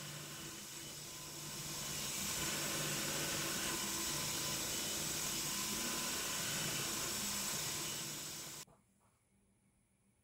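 Milling machine spindle running a small end mill through brass to widen a slot, a steady whir and hiss that grows louder about a second and a half in and cuts off abruptly near the end.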